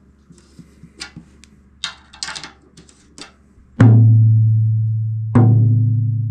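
Light ticks of a drum key turning the tension rods, then a drum with a freshly loosened batter head struck twice, about a second and a half apart. Each stroke rings out as a low, steady drum note that slowly dies away, its pitch lowered by the slackened head.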